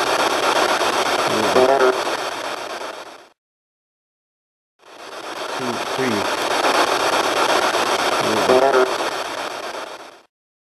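Hissy audio-recorder playback of faint voices counting, buried in heavy steady hiss. The segment plays twice, with a sudden cut to silence of about a second and a half between. The investigators take one faint voice in it for an EVP saying "four" after a man counts "one, two, three".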